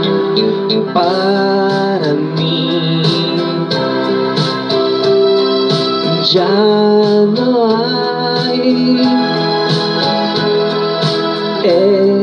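Music: a keyboard backing track for a romantic ballad, with organ-like sustained chords and a few long melody notes that waver with vibrato, one near the start, one in the middle and one at the very end.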